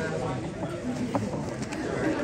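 Indistinct background chatter of several voices mixing together, with no one voice clear.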